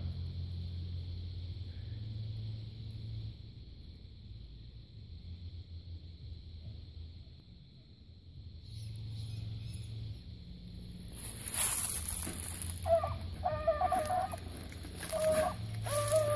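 Low outdoor rumble, then from about eleven seconds in a beagle giving voice on a rabbit's trail, a run of short repeated baying notes.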